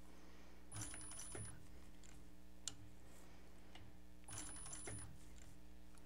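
Juki LS1341 industrial cylinder-arm sewing machine stitching very slowly through layered canvas and binding: two short runs of a few stitches, about a second in and again about four and a half seconds in, each with a faint motor whine, over a steady low hum.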